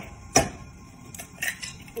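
An egg cracked against the rim of a frying pan: one sharp crack a little under half a second in, then a few faint clicks as the shell is pulled apart over the pan.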